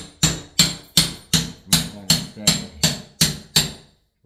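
Hammer blows on a window frame, struck in a steady rhythm of about three a second, each blow ringing briefly, as the old window is knocked out.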